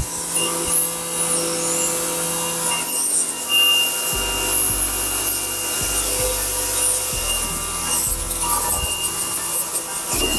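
Electric pressure washer running: a steady motor-and-pump whine under the hiss of the water jet spraying flagstone paving. A low rumble joins about four seconds in.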